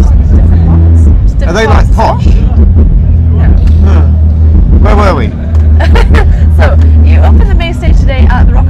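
Talking over a loud, steady low hum of background noise.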